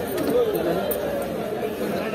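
Several people talking over one another: the chatter of a busy produce market, with no single voice clear.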